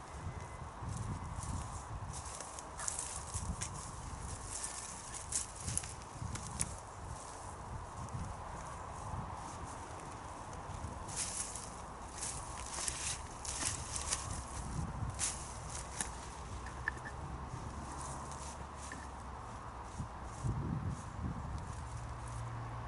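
Crackling and rustling of plant stems, leaves and soil being handled as annual flowers are pulled up by hand from a bed. The crackles come in two clusters, one a few seconds in and a longer one near the middle.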